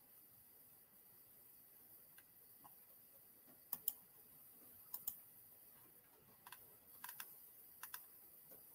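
A few sparse clicks of a computer keyboard being typed on, some in quick pairs, starting a little past halfway, over near silence.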